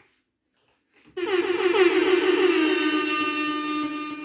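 A DJ mix transition: the music cuts out for about a second, then a single sustained note from the mix comes in, sliding down slightly at first and then holding with a light waver.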